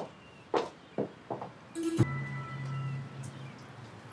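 A few short taps, then a sharp hit about two seconds in that starts a held low musical note with higher tones over it, fading out after about a second and a half: a dramatic soundtrack sting.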